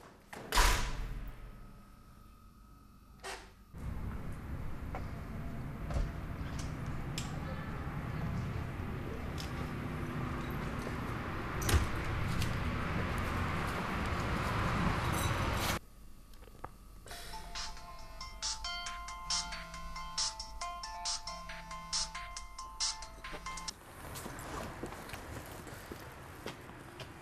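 A mobile phone's ringtone playing a short repeating melody for about seven seconds in the second half, while the phone shows an incoming call. Earlier there is one loud thud just after the start, then a steady rushing noise that cuts off suddenly.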